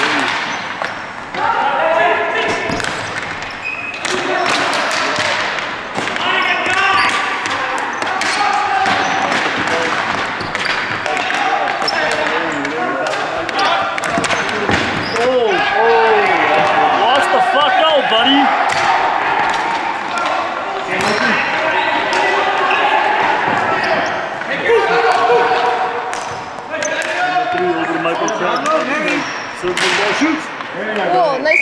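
Ball hockey played on a gym's hardwood floor: sharp clacks of sticks and the ball hitting the floor and walls, echoing in the large hall. Voices and shouts from the players and bench run through it.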